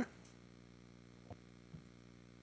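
Quiet meeting-room tone with a steady faint electrical hum, and two faint knocks close together in the middle.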